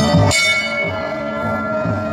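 A bell struck once about a third of a second in, ringing on in several steady tones. Background music plays with it, its drumbeat dropping out under the ringing.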